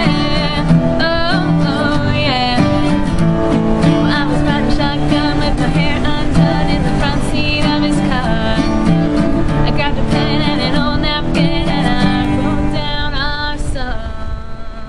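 Two acoustic guitars strummed in a country-pop song while a woman sings the melody, with a second voice joining at times.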